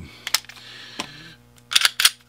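Sharp mechanical clicks from a Taurus G2C 9mm pistol being handled: a couple of light clicks, then a louder quick cluster near the end as the slide is pulled back and released, cocking the striker before a trigger demonstration.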